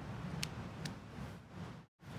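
Two small sharp clicks less than half a second apart over a steady low background hum, from plastic circuit-board modules and their connectors being handled and pressed together.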